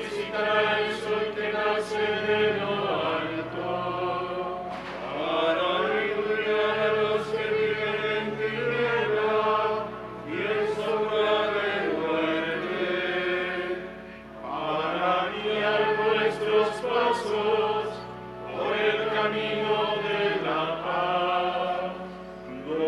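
Liturgical singing: voices sing a slow, chant-like hymn in phrases of a few seconds, with short breaks between the phrases.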